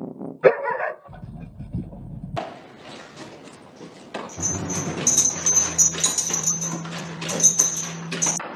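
A Shiba Inu gives one short, loud bark about half a second in. Later comes a dense, noisy stretch of a dog eating from a bowl.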